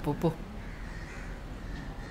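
Crows cawing: a short, loud burst of calls right at the start, then fainter calls further off.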